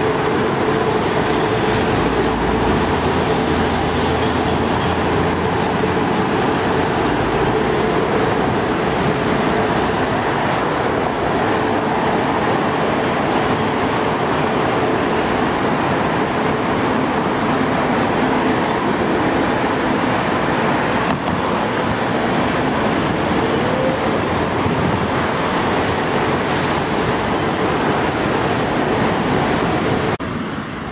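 Steady road traffic noise from cars and a bus passing along a city street, with a faint steady hum through about the first half.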